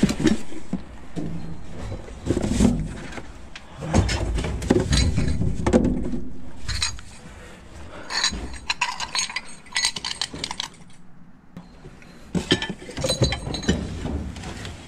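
Ceramic bowls and plates clinking and knocking together in gloved hands as they are picked up and stacked, in many short separate clinks, among the shuffle of cardboard boxes.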